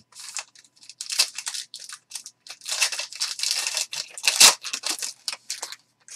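Plastic trading-card pack wrappers being torn open and crinkled by hand, with cards sliding against each other: a string of short rustles, a longer tearing stretch in the middle and the sharpest rip about four and a half seconds in.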